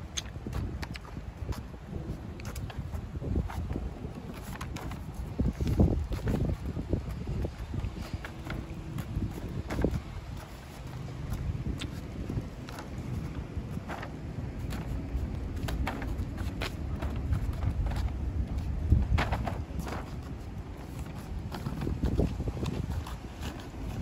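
Gusty wind rumbling on the phone's microphone while walking outdoors, with footsteps on asphalt making scattered short clicks.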